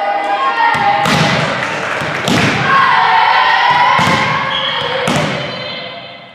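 Volleyball struck four times in a rally: sharp hits about one, two, four and five seconds in, each with a short echo, over sustained shouting voices of players.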